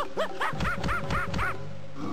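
A cartoon monkey chattering angrily: a quick run of short squeals that each rise and fall in pitch, about five a second, stopping shortly before the end. A background music score plays underneath.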